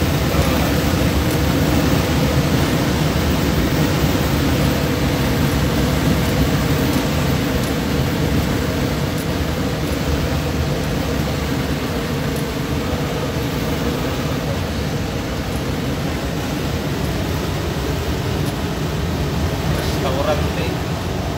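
Steady engine drone and road noise inside a moving vehicle's cab, cruising at a constant speed on an open road.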